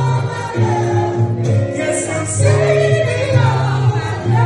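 Live soul/gospel-style music: a woman singing into a microphone over an amplified backing with a deep bass line that moves from note to note, played through a PA speaker in the room.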